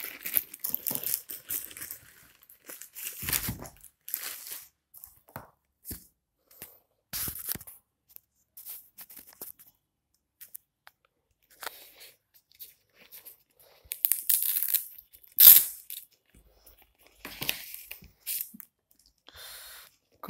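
Plastic wrapping crinkling and tearing in irregular bursts as a laptop charger and its cable are unwrapped, with one louder burst about three-quarters of the way through.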